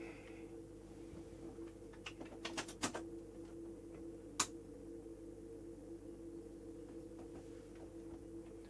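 A faint steady hum with a few light clicks, and one sharper click about four seconds in.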